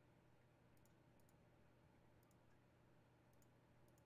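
Near silence: quiet room tone with a steady low hum and a few faint, scattered clicks.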